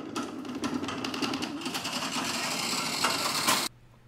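Genie 6172 wall-mounted garage door opener running as it starts to close the door, shaking the torsion shaft to feel the bounce in the springs, its check that the door isn't stuck at the top. The steady mechanical buzz cuts off suddenly near the end.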